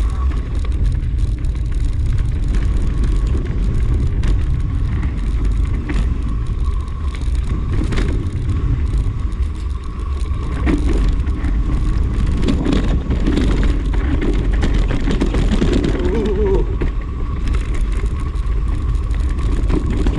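Bike riding fast down a dirt forest singletrack, with heavy wind rumble on the camera microphone and frequent rattles and knocks as it goes over bumps.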